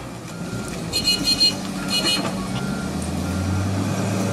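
Heavy diesel engine of a wheel loader running steadily as it reverses, its back-up alarm beeping about a second in and again at two seconds.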